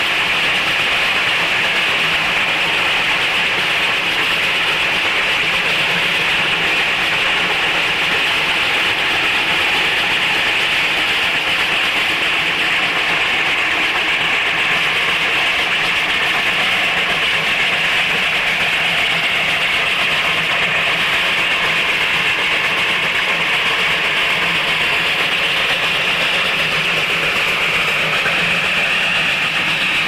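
Reading & Northern 425, a Baldwin steam locomotive, passing at close range with its train: a steady, loud rushing noise.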